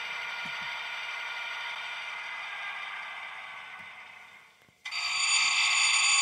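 Sound decoder in an HO-scale Athearn GP35 model diesel locomotive playing its shutdown through the model's small speaker. The diesel engine sound winds down and fades out over about four seconds. Near the end a loud hiss starts suddenly and runs on.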